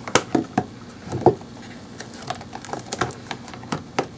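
Cured resin coasters being worked out of a flexible coaster mold: a run of small irregular clicks and crackles as the mold is bent and the resin pulls free, with sharper snaps just after the start and about a second in.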